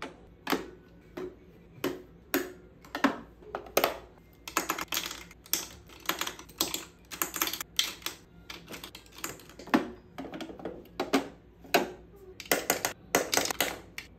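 Plastic makeup compacts and bottles clicking and clacking against a clear acrylic organizer as they are set into its compartments and drawers: an irregular run of sharp taps, several a second at times.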